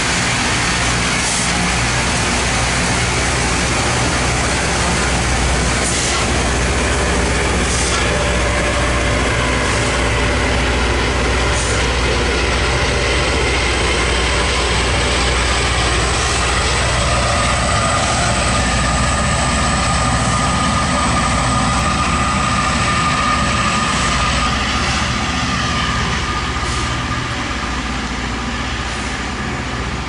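Loram rail grinder working close by: its rotating grinding stones run on the rail with a steady, harsh grinding noise over the low drone of its diesel engines. A high whine rises out of the grinding from about halfway through, and the sound eases off in the last few seconds.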